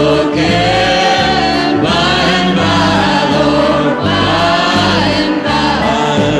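Live country gospel song: a group of women's and men's voices singing together in harmony over a band, with a bass line changing note about once a second.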